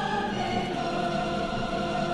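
Music in which a choir sings long, held notes, with no rapping.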